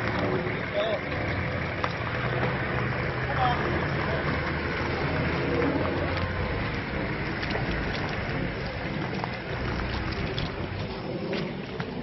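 A 4x4 off-roader's engine running with a steady low hum as the vehicle crawls through mud.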